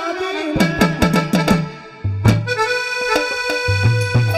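Live stage-band music: a sung line ends about half a second in, followed by a quick run of about six drum strokes that each fall in pitch. After a brief break about two seconds in, a loud hit starts held chords with steady drum beats underneath.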